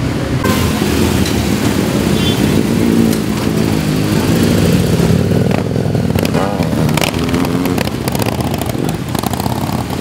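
Engines of several large touring motorcycles running as the group rides off, with a rise and fall in pitch a little past the middle as a bike pulls away.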